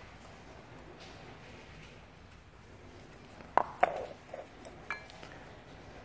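Metal engine parts clinking and knocking as they are handled: two sharp clinks with a short ring about three and a half seconds in, then a few lighter knocks.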